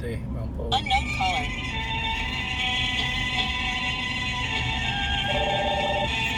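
Steady low road rumble of a car driving, under music with a long held, many-toned note that starts about a second in and holds to the end.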